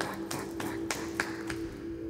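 Background music: a held low note with light, irregular taps over it, about three a second.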